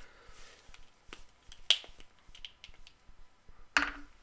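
Scattered light clicks and taps of small fly-tying tools and a magnifier being handled and set aside, with a sharper click about one and a half seconds in and another near the end.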